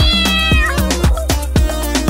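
A cat's meow: one high call that rises and then falls off within the first second. It sits over bouncy backing music with a steady beat.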